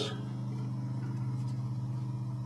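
A steady low hum with several even tones layered together, unchanging throughout, and no other distinct sound.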